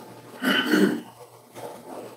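A single cough, lasting about half a second, a little under half a second in.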